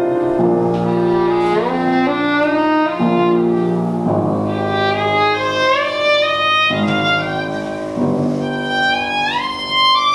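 Live classical violin and piano duo playing: a violin melody with several upward slides between notes, over sustained piano chords that change every second or so.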